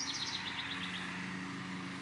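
A songbird sings a quick trill of short high notes that step down in pitch and fade out about a second in. A steady low hum runs underneath.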